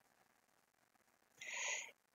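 Near silence, then about one and a half seconds in, a short, soft intake of breath lasting about half a second.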